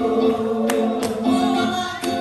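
Gospel singing by many voices in held notes, with a few sharp percussive strikes over it.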